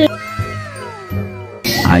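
A drawn-out pitched sound sliding steadily downward in pitch for about a second and a half, over background music, cut off by a loud voice near the end.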